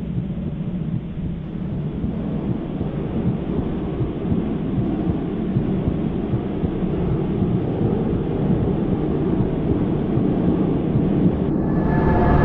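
A steady low rumbling noise with a hiss above it, growing slowly louder. Just before the end, sustained eerie music tones come in.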